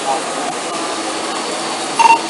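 Steady rushing background noise with a faint hum, picked up by a body camera's microphone.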